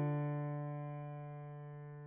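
A 1925 Chickering concert grand piano holding a chord, its strings ringing on and slowly dying away with no new notes struck.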